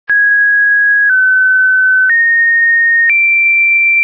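A sequence of four pure electronic sine tones, each held for about a second, with a click at each change of pitch. The tone starts high, drops slightly, then steps up twice, ending highest.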